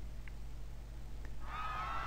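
Faint low hum, then about one and a half seconds in the faint, wavering high-pitched screams of a panicking crowd begin in the commercial's soundtrack.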